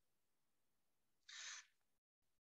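Near silence: room tone in a pause of speech, with one short, faint hiss about a second and a half in.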